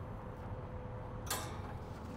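A quiet, steady hum from the running pellet grill, with one sharp click a little over a second in as a gloved hand handles the sheet pan of chicken.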